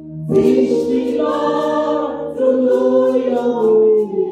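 A woman singing a gospel worship song into a microphone, unaccompanied, in long held notes; her voice comes in a moment after a short breath.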